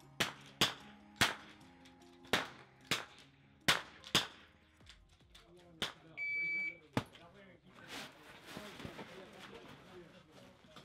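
Rapid sharp cracks of .22LR rimfire rifle shots, seven in about four seconds, over background music. A few seconds later a shot timer gives a half-second electronic start beep, followed by one more sharp crack about half a second after it.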